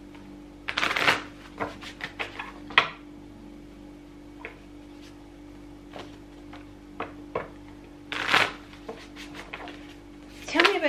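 A deck of cards being shuffled by hand: bursts of riffling and flicking cards about a second in, again around two to three seconds in, and near the end, with single card taps in between. A faint steady hum runs underneath.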